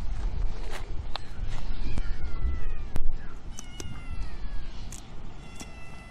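A kitten meowing: thin, high-pitched meows that fall in pitch, about three of them. A few sharp snips of scissors cutting through fin spines, the loudest about halfway through.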